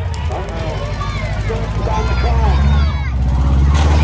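Demolition derby truck engines running loud with a low, pulsing rumble, one revving up about three seconds in, over a crowd talking.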